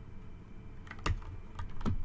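A few sharp clicks and taps from tarot cards being handled and laid down by hand with long acrylic nails; the loudest click comes about a second in, with smaller ones near the end.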